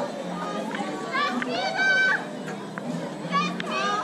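Children's high-pitched voices calling out, once about a second in and again near the end, over general chatter from the people around.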